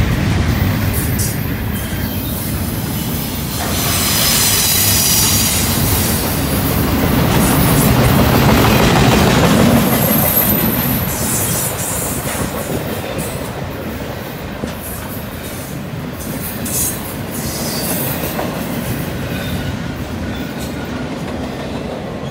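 Double-stack intermodal freight train's container-laden well cars rolling past close by, a continuous rumble and rattle of wheels on rail. High-pitched wheel squeal comes in between about four and ten seconds in, and the sound grows gradually quieter toward the end.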